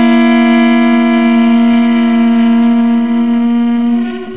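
Drone music played on a harmonic viola (a hybrid of an acoustic viola and a tunable harmonica) and a Lyra-8 synthesizer: a single note held steady.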